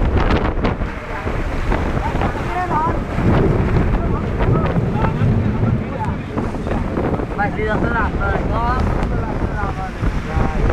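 Heavy storm wind and rain as a steady rushing noise, with gusts buffeting the microphone.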